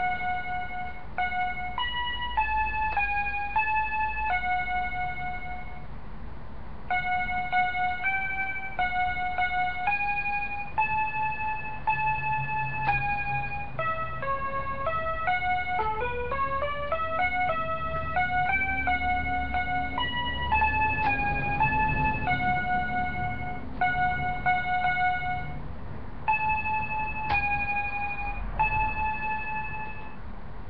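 Small electronic toy keyboard with mini keys playing a simple melody one note at a time, in short phrases with brief pauses. About halfway through, a quick run of notes goes down and then back up.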